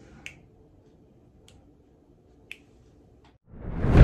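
Quiet room tone with a few faint, short clicks. About three and a half seconds in, a loud rising whoosh swells up as an intro sound effect begins.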